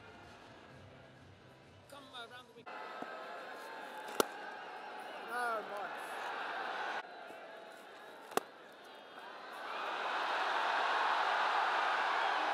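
Stadium crowd noise with a sharp crack of a cricket bat striking the ball about four seconds in, and another crack about eight seconds in. The crowd swells into loud cheering from about ten seconds in.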